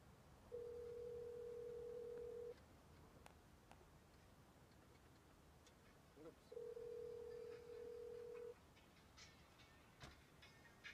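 Telephone ringback tone of an outgoing call ringing at the other end: two steady two-second rings about four seconds apart, not yet answered.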